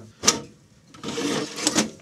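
A sharp click, then about a second of scraping as a drive slides out of the SGI Indigo2's metal drive bay, with a couple of clicks near the end.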